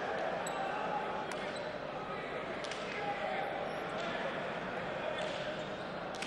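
Hand-pelota rally: the hard ball smacks sharply off players' bare hands and the frontón walls, about once every second or so, over a background of crowd voices.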